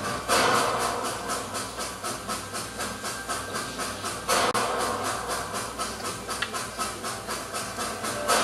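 A steady, rhythmic chugging with hiss, about two to three beats a second, with a louder hissing surge about every four seconds. It sounds like a looped sound effect played over the stage sound system.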